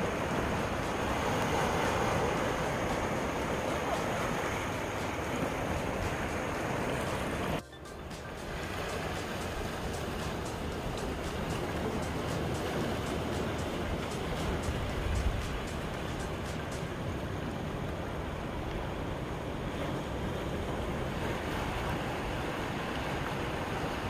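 Sea surf washing and breaking over shoreline rocks, a steady rushing wash of waves. It cuts off abruptly about eight seconds in and picks up again as a slightly softer wash of shallow water over stones.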